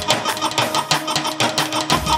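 Live dance music from a band with a keyboard, carried by a fast, even drumbeat and a steady melody line.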